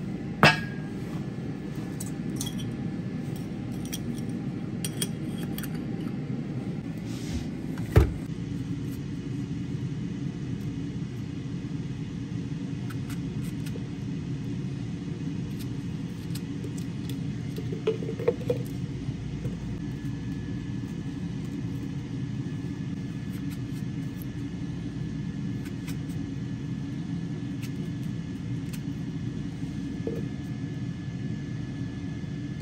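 Steady low rumble, with a sharp knock about half a second in, a louder knock about eight seconds in and a few light clicks around eighteen seconds, from kitchen things handled on a countertop.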